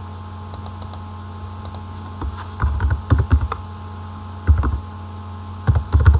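Computer keyboard typing: a quick run of keystrokes starting about two seconds in, then two shorter clusters of key presses, the last near the end.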